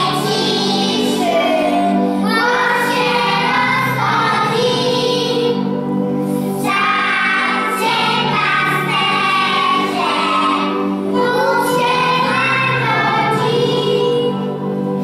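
Group of young children singing a song together over instrumental backing music.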